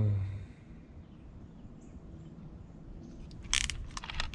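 Quiet outdoor stillness after a brief murmured "hmm", then a short, sharp clatter of hand tools being handled, a cordless drill and a pocket-hole jig with its drill bit, about three and a half seconds in. The drill is not running.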